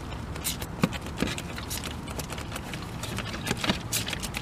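Trigger spray bottle being pumped repeatedly, giving irregular trigger clicks and a few short hissing squirts of liquid; the sprayer is sputtering and finicky rather than spraying evenly.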